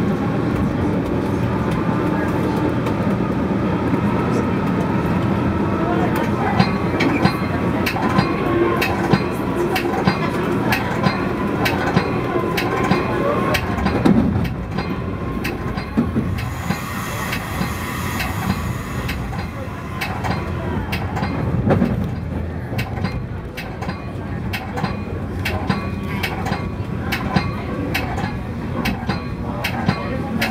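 Metra commuter train running at speed, heard from inside its cab car: a steady rumble of wheels on rail with frequent sharp clicks as the wheels cross rail joints and switches.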